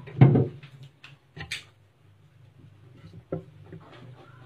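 Scuffling and handling noises as a bamboo rat is caught by hand in a tiled pen: a loud thump just after the start, a short hiss-like scrape about a second and a half in, and a sharp click a little past three seconds, over a low hum.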